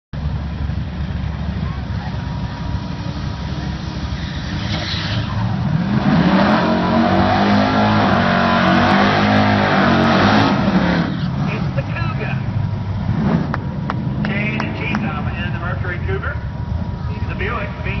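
1969 Mercury Cougar's 429 V8 drag car doing a burnout. The engine runs at the line, then from about six seconds in it is revved high with the rear tyres spinning and squealing. At about ten and a half seconds it drops back to a rough idle.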